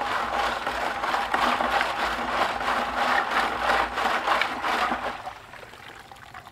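Gold-stripping liquid sloshing and churning in a tall plastic bucket as a stainless steel mesh basket of scrap is jerked rapidly up and down in it. This vigorous agitation speeds the stripping. It stops about five seconds in.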